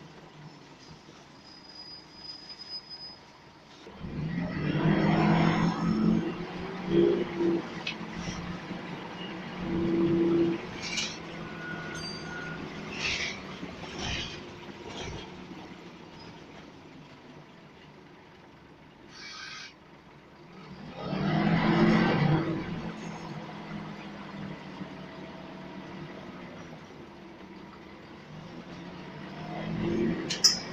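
Scania L94UB Wright Solar single-deck bus's diesel engine heard from inside the saloon, pulling away and speeding up twice: about four seconds in and again a little past twenty seconds. Between these it runs more quietly, with a few short hissing sounds.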